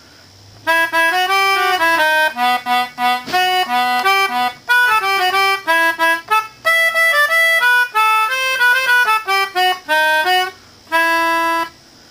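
Melodihorn, a keyboard free-reed wind instrument, blown through its long tube and played in a short classical-style passage of single notes and chords, with an accordion-like tone. After a short pause near the end it closes on one held chord.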